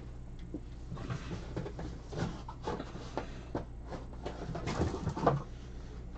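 Scattered knocks, taps and rustles of someone moving about and handling things off camera, busiest and loudest in the second half with one sharp knock near the end, over a steady low hum.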